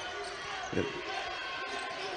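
A basketball being dribbled on a hardwood court during live play, under a low, steady arena background.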